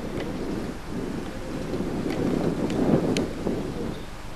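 Wind buffeting the camcorder microphone: a low, rough rumble that swells into a stronger gust about two to three seconds in, with a few faint clicks.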